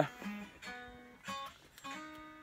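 Faint acoustic guitar music, a few plucked notes ringing and dying away in turn.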